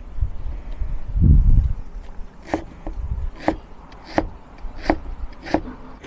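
Chinese cleaver cutting potato slices into thin strips on a wooden chopping board. A dull low knock comes about a second in, then about six sharp, evenly spaced blade strikes on the board, roughly one and a half a second.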